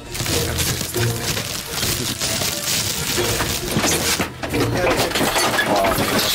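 Continuous clattering and crashing of loose things inside a caravan as it is shaken from outside, with voices and music underneath.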